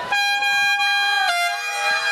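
A horn sounds one long, steady note that steps down slightly in pitch a little past halfway.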